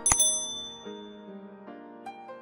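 A mouse-click sound effect followed at once by a bright bell ding that rings and fades over about a second and a half, over soft background music.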